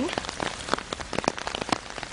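Rain falling on an umbrella held close, single drops striking the canopy as sharp irregular ticks, several a second, over a steady hiss of rain.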